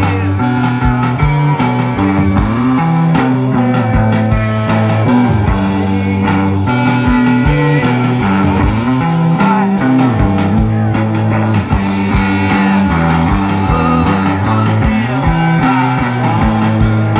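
Live rock band playing: electric guitar and bass guitar over a steady drum-kit beat.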